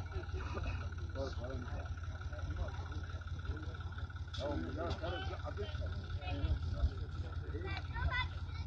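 Farm tractor engine running steadily, under scattered men's voices talking.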